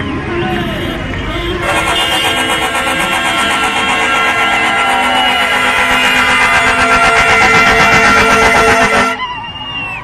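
Several vehicle horns sounding together in one long, loud continuous honk of mixed pitches. It starts about two seconds in and cuts off suddenly about a second before the end, with voices around it.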